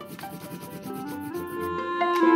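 Wax crayon rubbed sideways over paper in repeated strokes, making a leaf rubbing, with background music playing.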